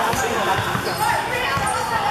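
Basketball bouncing on a hardwood gym floor, a few dull knocks, amid many overlapping shouting voices echoing in a large sports hall.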